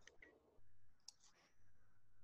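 Near silence: faint room tone with a low hum and a few soft clicks, some near the start and a small cluster around the middle.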